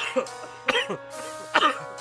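A rap beat playing, with a man coughing about three times over it.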